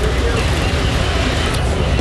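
Steady street noise dominated by a low engine rumble from vehicles, with faint voices in the background.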